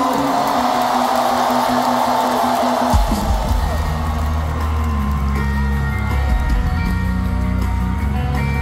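Live pop-punk band in an arena, heard through a handheld phone recording: a crowd din with a few held notes, then about three seconds in the band kicks in loud with heavy bass and distorted guitar.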